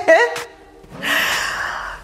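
A woman's short rising laugh, then about a second later a long, breathy, audible exhale, a sigh of effort during a hard arm exercise.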